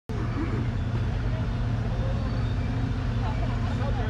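A large engine running steadily with a low, even hum.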